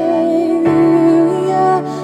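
A woman singing a slow, sustained worship melody over held keyboard chords, with the bass moving to a new chord about two-thirds of a second in.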